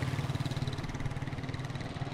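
Motorcycle engine running close by, a steady low drone.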